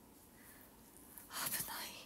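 A woman whispering softly: a short, breathy, toneless stretch of voice about a second and a half in.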